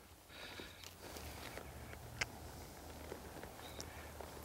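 Faint, soft steps of a horse walking in loose arena sand, with one sharp click about two seconds in.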